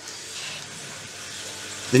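Steady, even hiss of background noise with no distinct event, ending as a man's voice begins.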